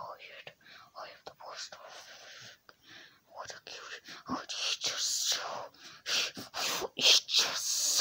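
A person whispering in short, breathy bursts that cannot be made out, louder in the second half.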